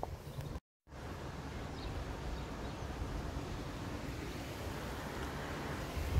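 Steady rushing noise of wind over the camera microphone and tyres on the road while cycling, after the audio cuts out completely for a moment near the start.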